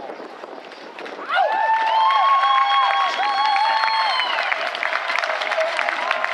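A crowd cheering and clapping, breaking in suddenly about a second in, with several long whoops held over the applause.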